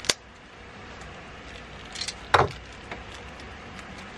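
Plastic water filter cartridge being worked open with a knife and fingers: a sharp click, then about two seconds later a short, louder scrape of plastic followed by a few light clicks.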